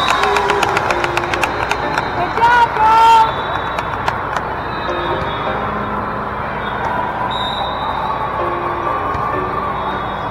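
Echoing din of a big hall full of volleyball courts: many voices calling at once, with a quick run of sharp hits through the first three seconds and a few short sneaker squeaks on the court floor around the third second.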